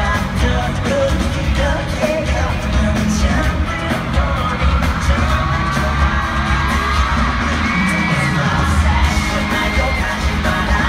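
A live pop/hip-hop song played loud through an arena sound system, with a heavy bass beat and singing, heard from the stands with the crowd screaming along.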